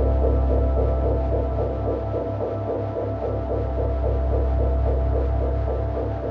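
Ambient meditation music: a deep, steady electronic drone with an even, pulsing throb, carrying a constant 4 Hz binaural beat in the theta range.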